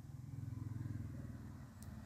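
A faint, low, steady machine hum with a fast, even pulse.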